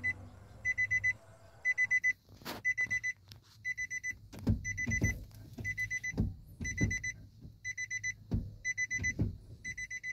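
Nissan NV350 Urvan's dashboard warning chime, sounding in quick bursts of high beeps about once a second. A few dull knocks from the controls being handled come in the second half.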